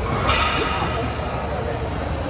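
Busy gym ambience: a steady low rumble with indistinct voices, which rise briefly early on.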